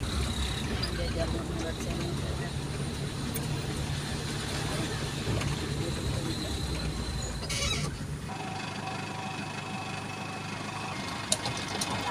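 Engine and road noise of a van on the move, heard from inside as a passenger rides along. It is a steady rumble that gives way, about eight seconds in, to a quieter, thinner hum.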